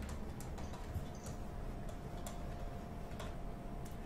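Faint, irregular clicking from a computer input device as words are handwritten on screen, over a faint steady hum.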